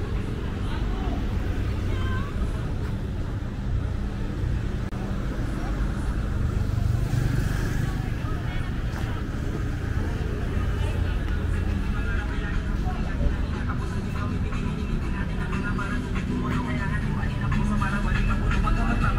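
City street sound: a steady low rumble of road traffic, with voices of people talking nearby.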